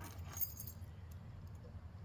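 Faint jingling of keys on a key ring, with light metal clinks, as a euro-profile lock cylinder is handled. It is clearest in the first half second.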